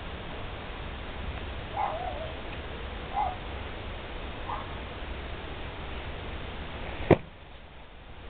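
Outdoor background noise with a low rumble, a few faint short calls about two, three and four and a half seconds in, and a single sharp click about seven seconds in, after which the background turns quieter.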